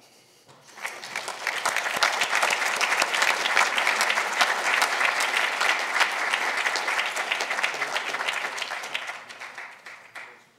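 An auditorium audience applauding: the clapping starts about half a second in, swells over a second or so, holds steady and dies away near the end.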